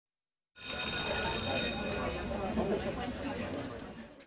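A bell ringing with a steady high tone for just over a second, over a murmur of many voices chattering that carries on after the ringing stops.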